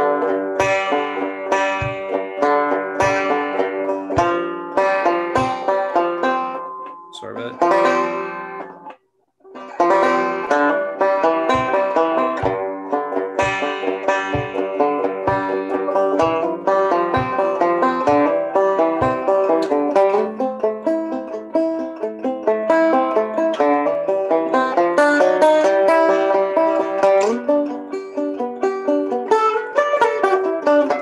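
Six-string banjo in open G tuning, flatpicked in a repeating down-up pick pattern, its notes ringing over a steady bass. The sound cuts out for a moment about nine seconds in.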